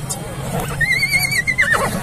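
A horse whinnies once about a second in: a high, wavering call that falls away in pitch at the end.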